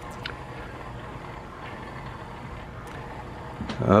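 The disc carousel of a Sony CDP-CE375 five-disc changer rotating to select a disc, driven by its motor through plastic gears with no belt: a steady low mechanical whir.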